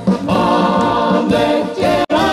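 Several vocalists singing together in a Czech brass-band (dechovka) song, holding notes with vibrato over a brass band playing behind them.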